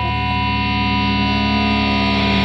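Music: the intro of a grunge rock song, held electric guitar tones sustained under a layer of noise and hum, slowly getting louder.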